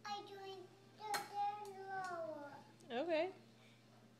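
A toddler's high voice making drawn-out sounds without clear words, one sliding downward about two seconds in, then a wobbling, warbling call near three seconds. A single sharp click comes about a second in.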